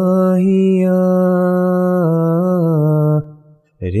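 Solo male voice chanting an Ismaili ginan, unaccompanied, holding one long vowel with a small melodic turn about two seconds in. The note ends a little after three seconds, and after a brief breath the next phrase begins at the very end.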